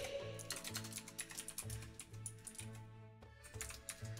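Typing on a computer keyboard: a quick run of key clicks, with soft background music underneath.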